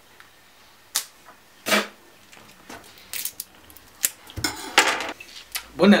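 Plastic wrapping on a round cheese being picked at and torn open, heard as a few separate crinkles and rips with pauses between them, the longest near the end.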